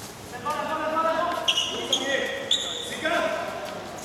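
Basketball game on a hard court: players' voices calling out, a basketball bouncing, and short high squeaks, typical of sneakers, from about a second and a half in.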